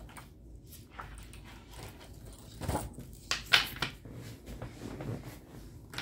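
Tabletop handling sounds as a disc-bound binder of paper game sheets is set down and opened: a few short knocks and clicks with light rustling, the loudest knock about three and a half seconds in.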